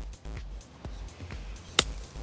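Background music with a low beat; near the end, a single sharp click as a golf iron strikes the ball off bare dirt under trees.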